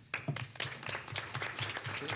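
Audience applauding: many hands clapping at once in a dense run that begins right at the start.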